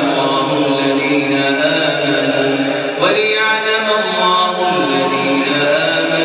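A man's solo voice chanting Quran recitation in long, melodic held phrases, with a brief break about halfway through where a new phrase begins.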